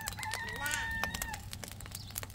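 A rooster crowing once, a single long held call that ends about a second and a half in. Frequent crackling from the wood fire under the frying griddle runs beneath it.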